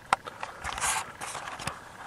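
Handling noise from a handheld camera: a sharp click just after the start, about half a second of rustling near the middle, then another short click.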